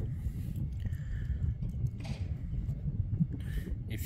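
Steady low wind rumble on the microphone, with a few faint brief sounds over it.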